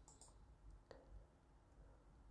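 Near silence with a few faint computer mouse clicks, a quick double click about a fifth of a second in and a single click near the middle.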